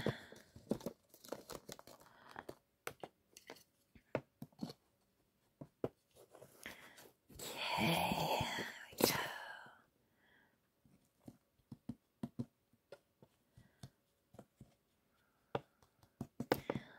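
Loose enclosure substrate being scraped and pushed around with a wooden tool to bury a piece of wood, with many small clicks and scrapes and one longer, louder rustle about halfway through.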